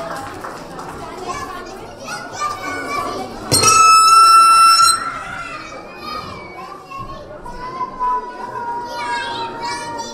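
Many young children chattering and calling out together. About three and a half seconds in, one loud, high-pitched squeal is held for about a second and a half. Later, a softer, slightly falling held voice rises over the chatter.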